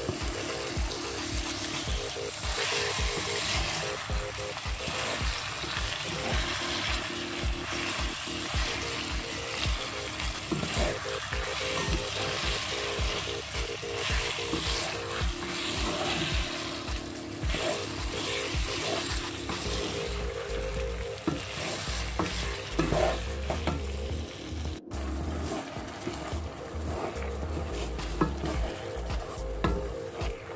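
Ground beef sizzling as it browns in a nonstick frying pan, stirred and scraped repeatedly with a wooden spatula.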